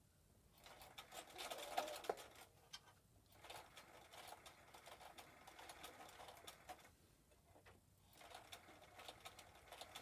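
Domestic electric sewing machine stitching through several layers of cotton and flannel, running in three short bursts with brief stops between them.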